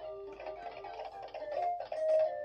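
VTech Lights and Stripes Zebra plush baby toy playing an electronic tune from its tummy unit, a melody of short notes.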